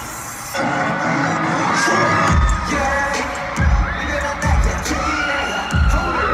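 Live rap-rock song playing over a stadium PA, recorded from the stands, with the crowd cheering and screaming. The music thins briefly at the start, then fills back in, and deep bass hits come in about two seconds in and repeat roughly every second.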